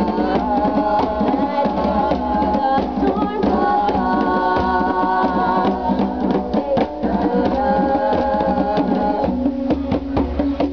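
Women singing together over hand drums: wooden barrel drums with stretched heads, struck with the hands in a continuous rhythm.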